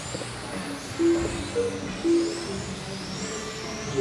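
Electric 1/10-scale touring cars with 21.5-turn brushless motors running laps, their motors giving high whines that rise and fall over and over as they accelerate and brake.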